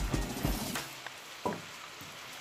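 Raw beef chunks sliding off a plate and dropping into a steel wok: a quick run of soft thuds and knocks in the first second, then a single sharper knock about a second and a half in.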